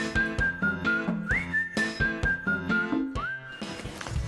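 Short music jingle with a high, whistle-like melody over a light beat and bass: each phrase slides up into a high note, then steps down through two lower held notes. The phrase plays twice, and a third slide up starts near the end.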